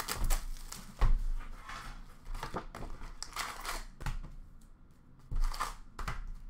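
Plastic wrap crinkling and a cardboard hockey card box being handled as it is opened and its packs pulled out: irregular rustling with a few louder bursts, one near the start, one about a second in and one near the end.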